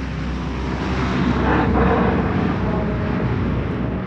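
Sound effect of propeller aircraft flying over: a loud, dense engine drone with a deep rumble, swelling slightly toward the middle and holding steady.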